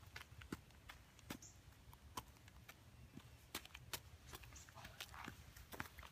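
Near silence: faint, irregular footsteps and light scuffs on dry, bare soil.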